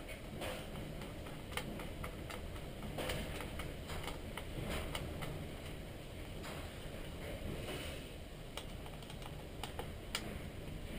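Irregular small clicks and taps of a screwdriver and screws against the open plastic case of a Turnigy 9X radio transmitter, as the screws of the throttle ratchet assembly are undone.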